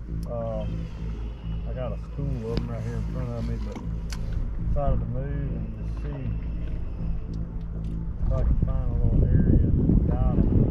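Steady low hum of a bass boat's bow-mounted electric trolling motor, with faint voice sounds coming and going. Wind buffets the microphone, louder near the end.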